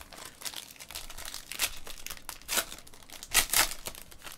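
Foil trading-card pack wrapper crinkling and being torn open by hand, with irregular crackles that are loudest in a burst about three and a half seconds in.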